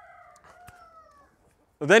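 A rooster crowing once, faintly: one drawn-out call that falls slightly in pitch, with a single sharp click partway through.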